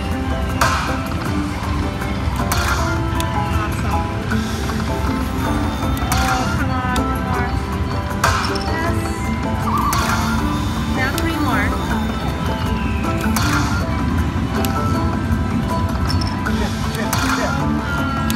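Lightning Link slot machine playing its free-spins bonus music, with sharp chimes and clunks as the reels stop and fireballs land, over a steady din of casino floor noise and background voices.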